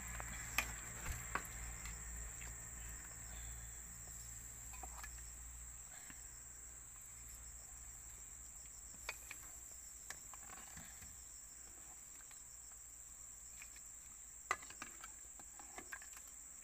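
Steady high-pitched drone of forest insects, with a few sharp clicks and knocks of a plastic ladle against a metal cooking pot and enamel plate as soup is served: three in the first second and a half, two more around the middle and a couple near the end.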